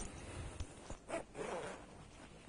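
Waxed cotton motorcycle jacket rustling as it is pulled on over the shoulders and settled, with two short swishes of the stiff fabric about a second in and shortly after.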